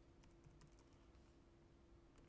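Faint typing on a computer keyboard: a quick run of light key clicks, over a faint steady hum.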